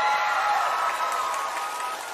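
A studio audience applauding, with a steady held electronic chord sounding over the clapping and fading slightly toward the end.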